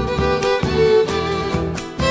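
Instrumental Tarija folk dance music led by violin, with a regular beat.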